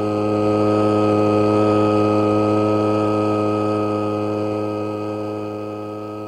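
Small two-stroke engine of a backpack motorized sprayer running at steady high speed, an unchanging drone that swells over the first couple of seconds and then slowly fades.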